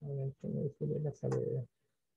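Four short, low-pitched vocal sounds in quick succession, each a steady held note, stopping after about a second and a half.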